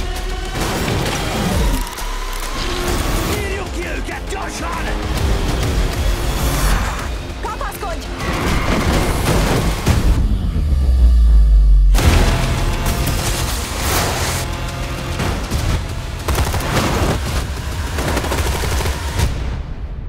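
Action-trailer music mixed with gunfire and explosion effects, with many sharp hits. About ten seconds in, a rising swell with heavy low rumble builds and cuts off suddenly, and the music and hits carry on after it.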